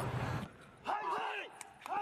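Two short, high yelping cries about a second apart, each rising and then falling in pitch, after a man's speech stops in the first half-second.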